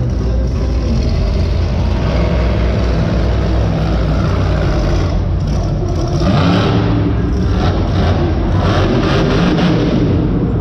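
A monster truck's supercharged V8 revving hard, the revs rising and falling. It gets louder about six seconds in, as the truck is driven up onto its front wheels.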